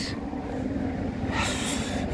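Steady low outdoor rumble of wind buffeting the microphone, with a brief hiss about one and a half seconds in.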